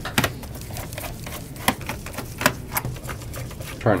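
Irregular sharp clicks and taps of a screwdriver and fingers on a laptop's plastic bottom case as its panel screws are worked loose.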